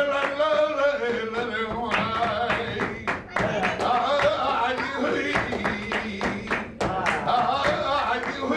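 A man singing flamenco cante in long, wavering held notes, accompanied only by the rhythmic hand-clapping (palmas) of the men around him.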